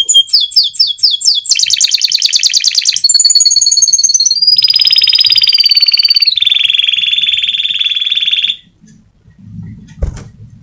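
Domestic canary singing a continuous song of changing phrases: fast repeated notes, a very rapid trill, sliding whistles and buzzing rolls, all high-pitched. The song stops suddenly about a second and a half before the end.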